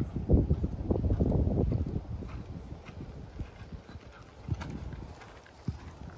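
Hoofbeats of a horse moving over sand arena footing as it passes close by: a run of separate low thuds, with a louder rush of low noise over the first two seconds.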